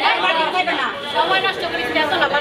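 Several people talking at once: loud, overlapping crowd chatter.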